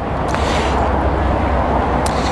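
Power trunk-lid closer of a Mercedes-Benz CLS400 running with a steady whir and low hum as the lid lowers itself, with a faint click about a third of a second in.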